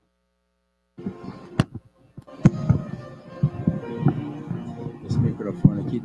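Silence, then a microphone goes live about a second in: two sharp knocks from it being handled on its stand, over muffled voices.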